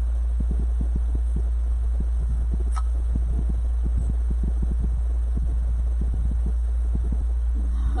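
A steady low hum, with soft irregular rustling and light taps as deco mesh and a wreath centre piece are handled, and one sharp click about three seconds in.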